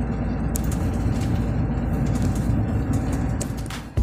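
Steady engine and road noise heard inside a truck cab climbing a mountain road, a low continuous rumble that fades down near the end.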